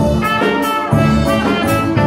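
Konkani song music in an instrumental passage: a brass-led melody, trumpet-like, over a band with a steady beat.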